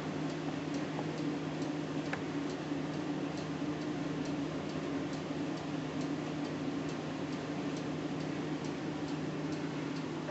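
A steady low hum with a faint, regular ticking running through it, a little over two ticks a second.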